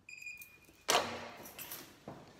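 A short high electronic beep lasting about half a second, then, about a second in, a sudden loud clack followed by rustling handling noise.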